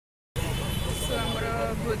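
A woman speaking over a steady low rumble of outdoor street noise, which cuts in suddenly about a third of a second in after silence.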